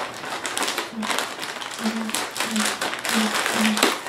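Plastic mailer bag crinkling and crackling in irregular bursts as it is handled and pulled open by hand.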